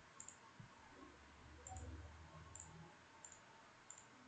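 Faint computer mouse clicks, a handful of quick double clicks, over near-silent room tone.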